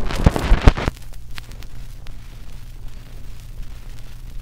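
Surface noise from a 1948 Audiodisc acetate home recording disc playing at 78 rpm: a burst of loud crackles and pops in the first second, then steady hiss over a low hum.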